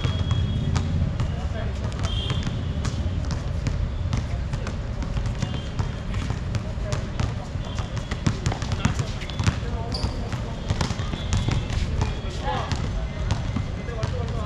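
Basketball bouncing on a hard outdoor court during a game, irregular thuds, with players' voices calling out in the background.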